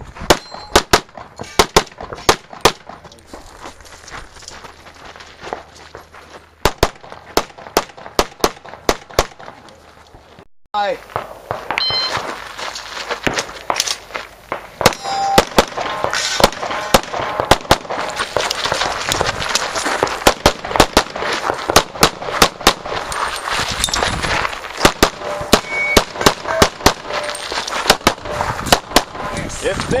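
Handgun shots fired rapidly in strings, mostly in quick pairs, as a competitor shoots a practical-shooting stage, with short pauses between strings while moving between positions. About ten seconds in, the sound cuts out briefly, then the shooting goes on over a louder background hiss.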